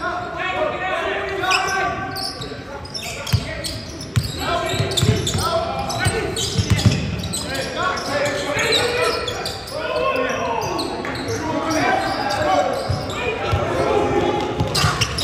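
A basketball being dribbled and bouncing on a sports hall's wooden court, thumping at irregular intervals, with players' voices calling out throughout. The sound echoes in the large hall.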